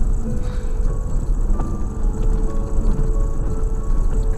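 Steady low rumble of a car rolling slowly over a gravel track, heard from inside the cabin. A few faint held tones sound over it, coming and going.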